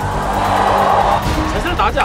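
Edited TV soundtrack: music under a rushing noise burst for about the first second, then brief voices near the end before the sound cuts off.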